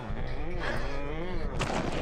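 A person's voice making drawn-out wordless sounds, then a few sharp knocks or hits about one and a half seconds in.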